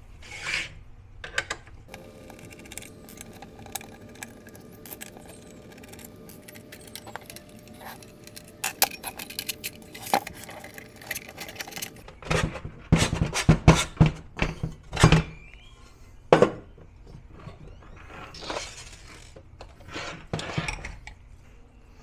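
Small screws being unscrewed and set down, and the inverter's aluminium case panels clinking, scraping and knocking as the housing is taken apart with a screwdriver. The sounds come as scattered clicks, with a run of louder knocks and scrapes about halfway through, over a faint steady hum.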